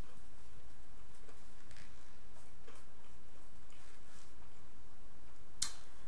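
Faint, scattered mouth clicks of someone chewing food, with one sharper click shortly before the end, over a low steady hum.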